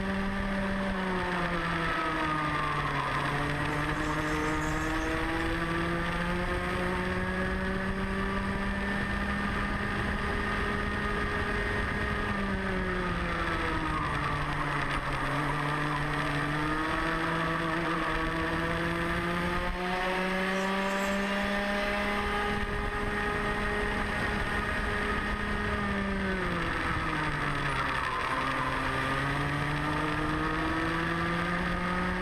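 Rotax Mini Max single-cylinder 125cc two-stroke kart engine heard from onboard at racing speed. It holds a high pitch along the straights and drops three times as the kart slows into corners, then climbs back each time under acceleration.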